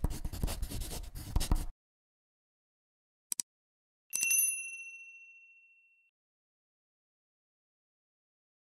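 Sound effects: a pen scratching on paper for nearly two seconds, then a quick double mouse click, then a bright bell-like notification ding that fades out over about two seconds.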